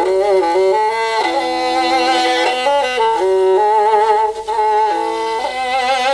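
Kyl-kobyz, the Kazakh two-stringed bowed fiddle with horsehair strings, playing a slow melody of long held notes, some with vibrato, the pitch changing about once a second.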